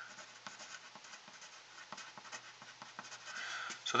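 Pencil writing on paper: faint, irregular scratches of short strokes as block capital letters are written out.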